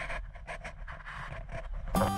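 Steady rushing noise of wind and water past a moving boat, heard in a short break between two pieces of music; the music cuts back in at the very end.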